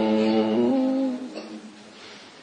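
A voice holding a chanted note, which steps slightly higher about half a second in and fades out a little after one second, leaving faint room hiss.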